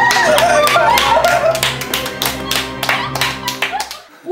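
Hands clapping in quick, uneven claps, with laughter, over a steady background music track; all of it cuts off abruptly at the end.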